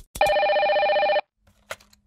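Telephone ring sound effect: one electronic ring lasting about a second, just after two short clicks, with a faint click near the end.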